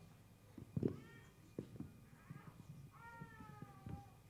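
Faint squeaks of an eraser wiped across a whiteboard: a short squeal about a second in and a longer, slightly falling one near the end, with light knocks and rubbing between.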